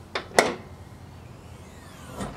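Car hood being unlatched and lifted: two sharp metallic clicks about a quarter second apart, the second louder.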